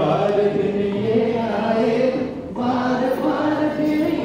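A group of voices singing together in held, stepping notes, with a short pause for breath about two and a half seconds in.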